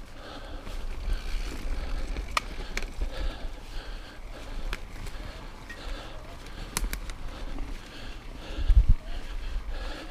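Mountain bike rolling over a rough dirt singletrack: tyres on loose dirt and leaves, with a handful of sharp clicks and one heavy thump near the end.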